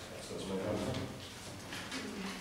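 Quiet, indistinct speech in a meeting room, softer than the main speaker's voice.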